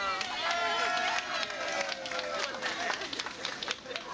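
Two riders' voices laughing and exclaiming without clear words, including one long drawn-out cry that falls slowly in pitch, with a few light clicks.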